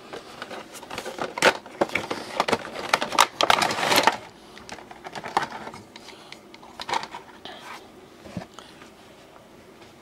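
Vinyl figure being unboxed: cardboard box and clear plastic packaging handled, with a dense run of crinkles, rustles and clicks for about the first four seconds, thinning to scattered clicks and going quiet after about seven seconds.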